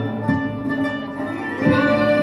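Live Persian classical ensemble playing an instrumental passage with no voice: a plucked or struck string instrument in the foreground, most likely the santur, over a low bass line. Near the end the bowed strings (violins, cello, double bass) come in and the music grows louder.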